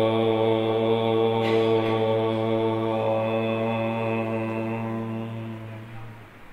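A man chanting a single long "Om", held on one steady low pitch and fading out near the end.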